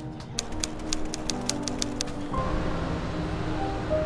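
Background music with sustained melodic notes. A quick run of sharp ticks sounds in the first half, and a steady rushing noise joins the music about halfway through.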